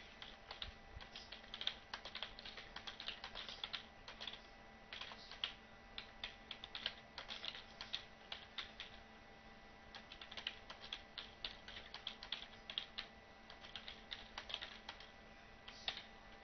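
Fairly faint computer keyboard typing: quick runs of key clicks with a short lull about halfway through.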